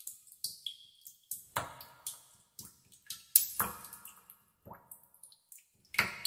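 Water dripping in a cave: drops falling at irregular intervals, each a sharp plink with a short echoing tail, with louder drops about a second and a half in and again past three seconds.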